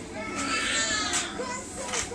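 Children's high-pitched voices shouting and calling out, loudest from about half a second to one second in.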